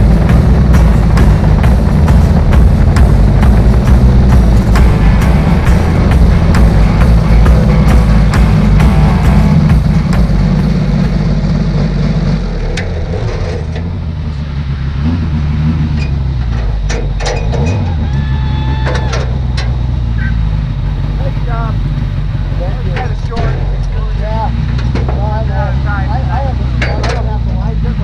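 Onboard sound of a four-cylinder Mod 4 open-wheel race car's engine running hard at speed. About twelve seconds in it slows, then idles with the car stopped, and voices are heard nearby.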